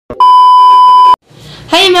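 Television colour-bars test tone: a single steady, pure beep lasting about a second that cuts off suddenly.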